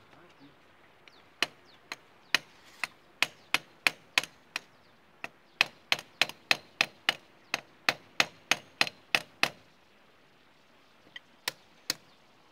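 Hammer striking a steel bar held against an excavator final-drive bearing to knock it out: a quick run of sharp, ringing metal-on-metal blows, about three a second. The blows stop for a moment before three more near the end.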